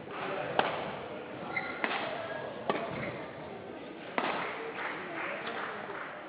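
Badminton rally in doubles play: rackets hitting the shuttlecock four times, sharp cracks spaced roughly a second apart.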